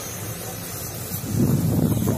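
Wind buffeting the phone's microphone, a low rumble that swells into louder gusts a little past halfway.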